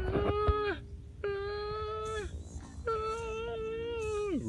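A man's voice holding three long notes in a row, each about a second long with a slight waver in pitch, with short breaths between them.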